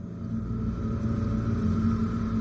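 A steady low ambient drone with a faint held higher tone above it, swelling in slightly at the start.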